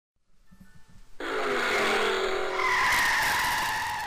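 A car's tyres screeching, played as a sound effect: a loud squeal starts suddenly about a second in, jumps higher in pitch about halfway through, and fades toward the end.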